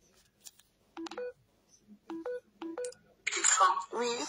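Three short electronic phone tones, each a low beep stepping up to a higher one: one about a second in, then two close together a little later. Near the end a voice starts.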